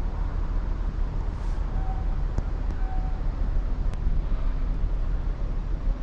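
Wind buffeting the microphone, a steady low rumble, with a few faint short tones.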